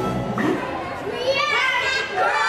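Backing music ending early on, then a group of young children's voices rising together about a second in, held and sliding in pitch.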